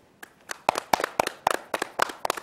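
A small group of people clapping their hands: sharp, uneven claps that start a moment in and come several a second.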